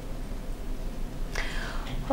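A pause in a conversation: a low, steady room hum, then a short intake of breath about one and a half seconds in.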